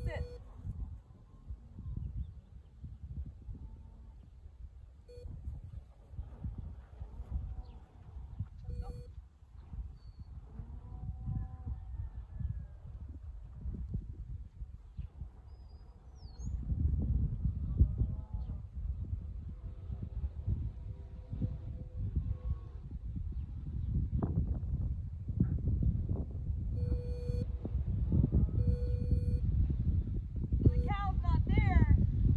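Wind rumbling on the microphone, heavier in the second half, with a few short electronic beeps early on and a quick run of beeps near the end: the tone of a dog's e-collar being used.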